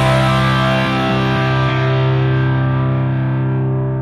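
Rock music ending on a held distorted electric-guitar chord with no drums, left ringing and slowly fading out.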